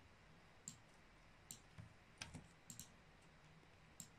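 Several faint computer mouse clicks, scattered and some in quick pairs, as text in a PDF is selected.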